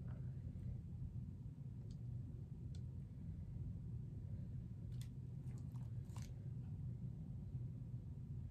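Steady low room hum with a few faint, short scrapes and ticks of a small stick working resin in a mold, clustered near the middle of the stretch.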